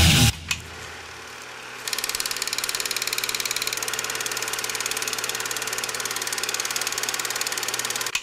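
A low hum, then about two seconds in a fast, even mechanical clatter starts, like a film projector running, over a steady hum.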